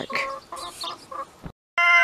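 Chickens clucking in a quick run of short notes. After a brief cut, near the end, a rooster starts to crow with a long, steady note.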